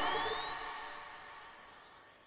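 The tail of a radio station's logo jingle fading away, with a thin high tone gliding steadily upward through it.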